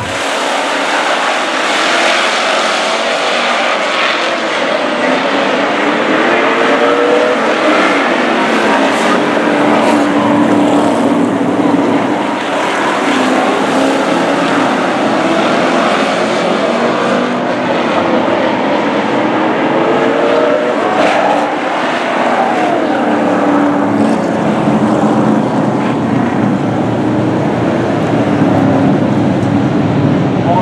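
A pack of Super Pro race trucks running at speed on an oval track. Their engines rise and fall in pitch as they accelerate and pass.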